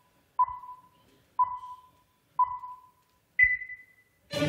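Electronic countdown beeps, one a second: three short beeps at one pitch, then a louder, longer beep an octave higher near the end, the pattern that marks the moment of the start.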